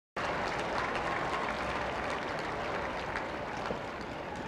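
A large crowd applauding: dense, steady clapping that starts abruptly and eases slightly toward the end.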